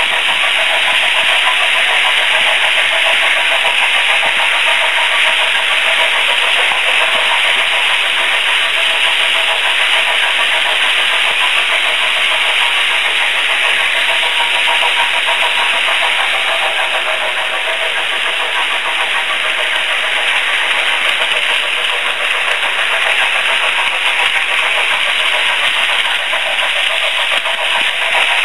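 Märklin H0 scale model freight train running along its track: a steady, loud rattle and whir of small wheels on the rails.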